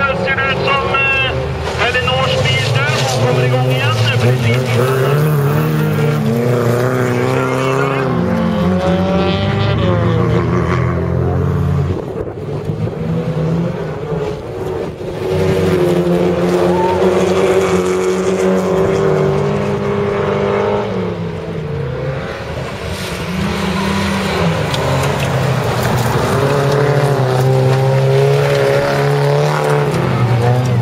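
Several race car engines running hard on a gravel track, revving up and dropping back again and again through gear changes and corners.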